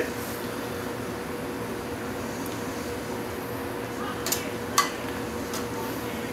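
Pot of soup boiling on the stove: a steady hiss with a steady hum under it, and two light knocks about four and a half seconds in.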